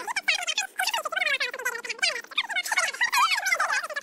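Women's conversation played back fast-forwarded: garbled, high-pitched chattering speech with rapid pitch swoops and no pauses.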